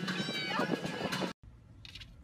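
A young yellow Labrador howling, a high wavering call that cuts off abruptly just over a second in, followed by a few faint clicks.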